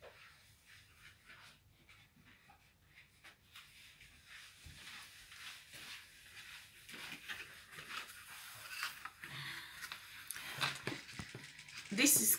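Faint scattered knocks, clicks and rustling of a person moving about and handling things off to the side while fetching a box of cling film, getting louder and busier in the second half as they come back to the table.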